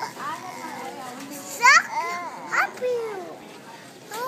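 Young children's wordless vocalizing: several short gliding calls and shouts, the loudest a high rising squeal a little under two seconds in.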